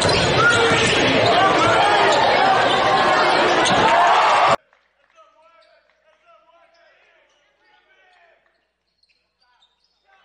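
Basketball game sound in a reverberant gym: many crowd voices and the noise of play, with the ball bouncing on the court. It cuts off abruptly about four and a half seconds in, leaving only faint, distant voices.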